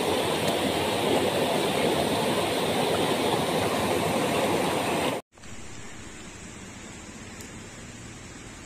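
Stream water rushing over rocks, a loud steady rush. It cuts off abruptly about five seconds in, leaving a much fainter steady hiss.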